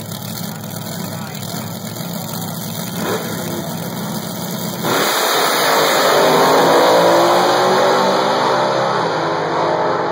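Supercharged front-engine dragster idling on the starting line with a 1950s car alongside, with a short rev about three seconds in. About five seconds in both launch at full throttle: the sound jumps in loudness and the engine pitch glides as they run off down the drag strip.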